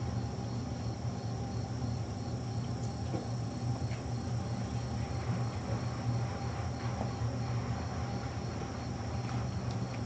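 Steady room background: a low electrical hum with a faint, constant high-pitched whine, and a few soft ticks.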